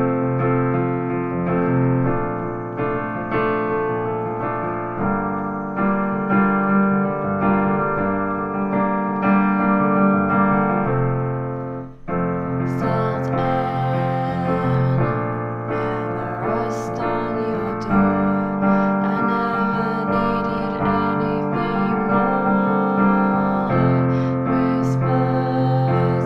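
Piano playing the chords F, B-flat major 7 and G minor 7 in a repeating rhythmic pattern, with the thumb repeating notes to imitate guitar strumming. The chords change every few seconds, with a brief break about halfway through.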